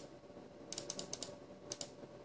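Computer mouse button clicking in quick succession, one click, then a fast run of about six around the middle and two more near the end, as the minute arrow on a DVR time picker is clicked up.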